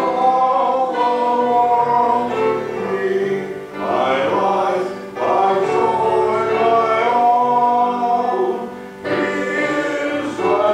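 A gospel hymn sung to grand piano accompaniment, in long held phrases with short breaks between them about four and nine seconds in.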